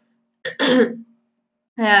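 A person clearing their throat once, a short rasping sound about half a second in; speech resumes near the end.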